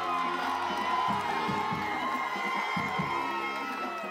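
Crowd of football fans in the stands cheering and shouting, many voices at once, with music playing under it.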